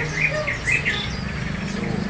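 Caged songbirds chirping: a quick cluster of short chirps in the first second, with thin, high, falling calls throughout, over a low steady hum.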